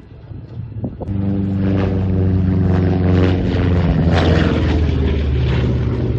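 Republic P-47 Thunderbolt's Pratt & Whitney R-2800 radial piston engine running at power in a fly-by. The engine comes in loud and steady about a second in, and its pitch drops a little past the middle as the plane goes past.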